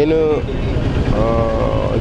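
A man's voice speaking into a handheld microphone: a word ends early on, then a pause, then a long held vowel lasting nearly a second, over a steady low rumble of background noise.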